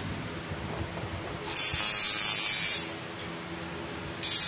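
Tattoo machine running in one burst of a little over a second, switching on and off abruptly, with a high-pitched whine over a buzz.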